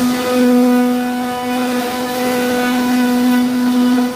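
CNC router spindle milling a wooden door panel: a steady whine that swells slightly as the bit cuts.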